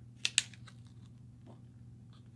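Two sharp clicks of a plastic blister pack being picked up and handled, a fraction of a second apart, then a few faint light handling ticks over a low steady hum.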